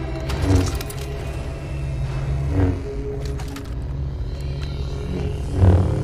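Lightsaber sound effects: the steady low hum of two ignited lightsabers, with three loud swinging swooshes, about half a second in, about two and a half seconds in and near the end, and a few sharp crackles, over background music.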